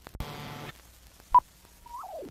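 Noise from the optical soundtrack of a 35mm film print as the trailer runs out into black frames: half a second of buzzing noise just after the start, then a single short, sharp beep a little past halfway, and a faint tone near the end that begins to slide down in pitch.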